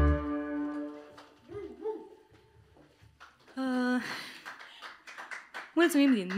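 An acoustic lăutari band (violin, accordion, double bass and cimbalom) ends a song on a final chord that dies away within about a second, followed by a few scattered voices.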